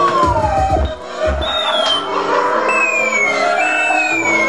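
Free-improvised electronic music: a series of sustained tones, each sliding downward in pitch, over low rumbling thuds in the first second or so.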